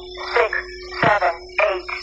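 Intro music: short squeaky sounds sliding down in pitch, about four in two seconds, over a held low note.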